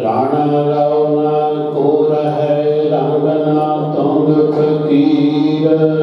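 A man's voice chanting Sikh scripture (Gurbani) in long, drawn-out melodic phrases, starting suddenly as a new phrase begins and running on without a break.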